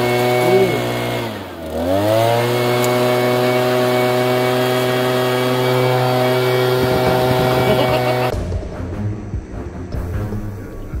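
Petrol backpack leaf blower, rigged to shoot snowballs, run at full throttle while it blows a load of snowballs out of its tube. The engine pitch dips and climbs back about a second and a half in, then holds steady. Near the end it gives way to a slowed-down, quieter replay with music.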